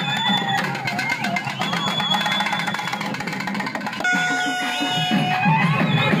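Wind instruments playing a wavering, ornamented melody with a few long held notes about four seconds in, over steady drumming.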